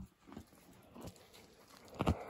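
A young milk cow chewing hay right at the microphone: a few faint, soft crunches about half a second apart.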